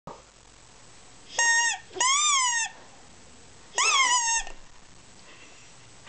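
Small plastic toy horn blown by a toddler: three short toots of about half a second each, the second and third bending up and then down in pitch.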